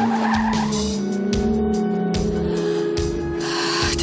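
Car tyres squealing as the car swerves at speed, over a music score with a steady low pulse.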